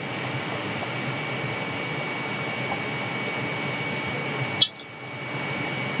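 Room tone: a steady hiss with a thin high whine through it, and one short click about four and a half seconds in, after which the hiss briefly drops away and comes back.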